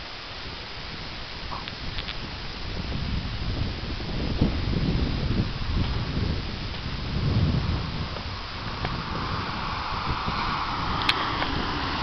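Wind buffeting the microphone outdoors, an uneven low rumble that swells and eases. A steady hiss builds in the second half.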